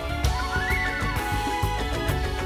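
Television news countdown theme music with a steady beat of percussive hits, and a tone that sweeps up and back down about half a second in.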